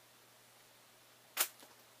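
A single sharp click about a second and a half in, followed by a few faint ticks, as paper brochures and cards are handled, over faint room tone with a low hum.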